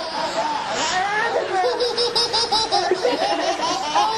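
Several babies laughing together in giggly peals, breaking into a run of quick repeated giggles about two seconds in.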